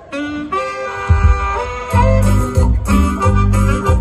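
Live band music starting up: held melody notes on a wind or reed instrument, then a steady bass-and-drum beat comes in about two seconds in.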